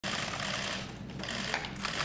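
Many camera shutters clicking rapidly and overlapping in a dense clatter, over a low steady hum.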